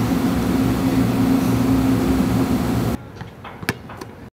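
Steady room hum of ventilation noise with a low drone. It cuts off suddenly about three seconds in, leaving a much quieter background with a single sharp knock near the end.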